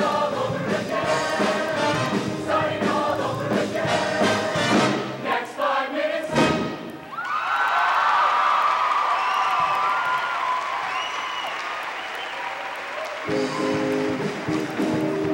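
Show choir singing over instrumental accompaniment, the song ending on a sharp final hit about six seconds in. The audience then cheers and applauds with high-pitched screams. Near the end the band starts the next song.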